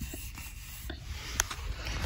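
Handling noise as a ceramic figurine is set down and shifted on a vinyl-covered board: rubbing and light taps, with one sharp tap about one and a half seconds in.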